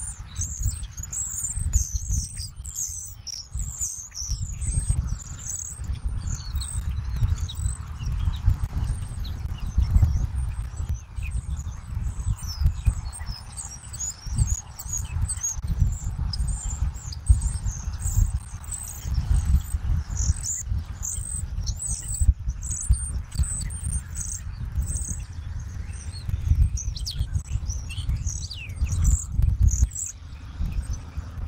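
Small songbirds chirping, many short high-pitched calls one after another, over wind gusting and rumbling on an outdoor microphone.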